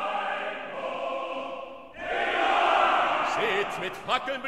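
Opera chorus singing in full chords, with orchestra, hailing the victorious toreador. A louder new phrase enters about two seconds in.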